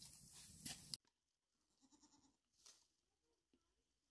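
Faint goat bleats in a near-silent pen, after a steady hiss with a couple of sharp clicks that cuts off suddenly about a second in.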